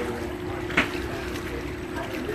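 Ferry's engine running with a steady drone and hum, and one short sharp sound a little under a second in.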